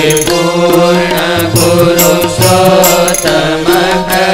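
A Hindu devotional chant sung over percussion, with a low drum and sharp high strikes keeping a steady beat about twice a second.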